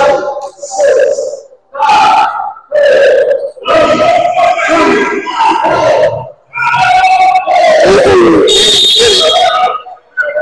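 Players and onlookers shouting and yelling in a gymnasium as the last seconds of a basketball half run down. A high, shrill tone sounds for about a second near the end.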